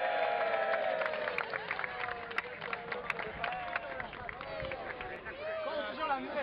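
A group of men cheering in one long held shout, then scattered claps and voices from the huddled team.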